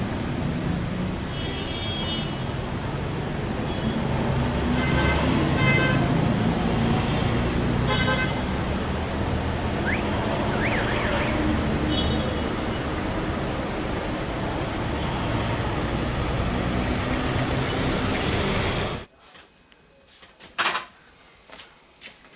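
Steady city street traffic noise with several short car horn beeps. About three seconds before the end it cuts abruptly to a much quieter room with a few soft knocks and rustles.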